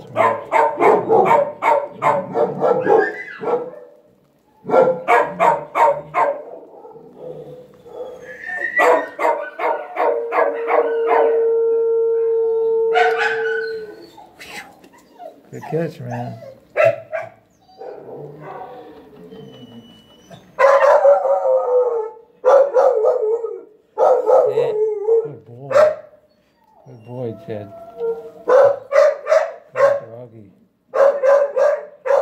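Shelter dogs barking in repeated bouts, with one long howl held for about three seconds midway.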